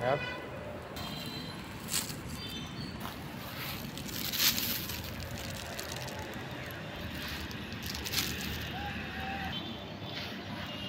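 A plastic bag being handled outdoors, with a few brief rustles of the plastic, the loudest about four and a half seconds in, over a steady background hum.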